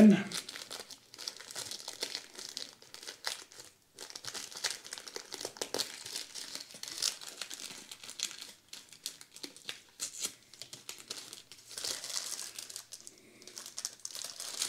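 Small paper seed packet being opened and handled between the fingers: irregular crinkling and rustling of paper, with a few sharper crackles.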